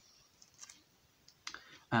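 Faint clicks and light handling of a plastic CD jewel case held in the hands, with one sharper click about one and a half seconds in.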